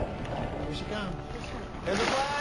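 Steady rushing, churning water with a few short raised voices over it.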